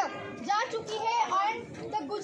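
Speech only: a woman speaking in a raised voice to a small group outdoors.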